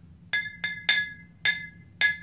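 Partly full 40-ounce glass malt liquor bottle tapped four times with a knife blade, each tap ringing on at the same clear pitch.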